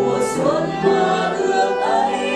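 A woman singing a slow song into a microphone, accompanied by upright piano and violin, her held notes wavering with vibrato.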